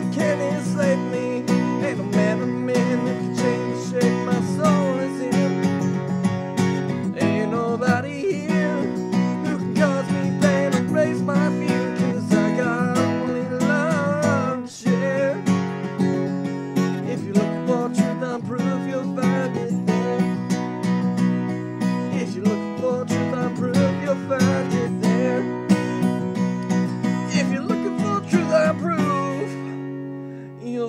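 Steel-string acoustic guitar strummed in a steady rhythm, full chords ringing, with a brief dip in loudness about halfway through.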